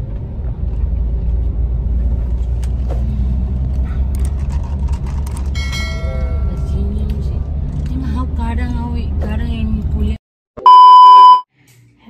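Steady low road and engine rumble inside a moving car's cabin, with a brief chime about six seconds in. The rumble cuts off suddenly near the end and is followed by a loud electronic beep lasting about a second.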